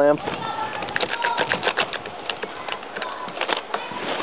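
Irregular clicks and rustling as an Irwin Quick-Grip one-handed bar clamp is squeezed down onto a joint wrapped in wax paper.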